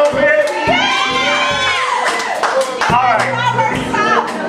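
Live band music: drum kit strokes at an even beat under a lead line that slides and bends up and down in pitch.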